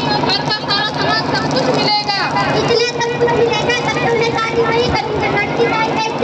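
Girls' voices speaking through handheld microphones and a loudspeaker PA system. A steady tone comes in about three seconds in and holds under the voices.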